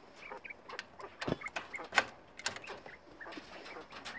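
Jumbo golden coturnix quail giving short, soft peeping calls and shuffling in a hutch, with a few light clicks and a dull knock about a second in.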